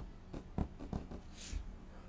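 Five or six light clicks in the first second, then a short breath out through the nose about one and a half seconds in.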